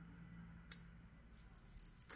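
Near silence: quiet room tone with a single faint click a little under a second in.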